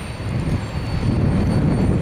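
Freight cars of a rail train, gondolas loaded with long rails, rolling past with a steady rumble of steel wheels on the track. It grows louder about a second in.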